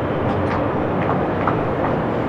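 Steady background noise with a few faint clicks, with no clear pitched source or distinct event standing out.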